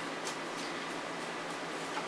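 Steady background hum in a small room, with a few faint, soft scrapes of a wooden spoon moving chopped vegetables around a Ninja Foodi's metal inner pot.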